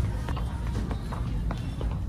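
Footsteps and rubbing, rumbling handling noise from a phone camera carried in the hand while walking, with music playing underneath.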